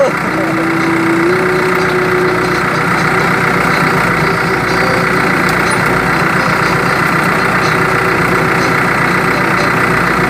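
New Holland farm tractor's diesel engine running at a steady, even pace as the tractor drives along.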